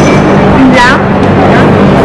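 Loud background chatter of a crowded restaurant, many voices overlapping, over a steady low hum.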